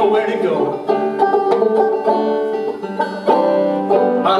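Banjo picked in a steady folk-song accompaniment between sung lines, the notes ringing and decaying; a sung word trails off in the first half second.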